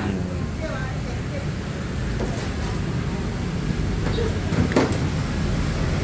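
Steady low rumble of a nearby motor vehicle running, with faint background voices and a brief click about five seconds in.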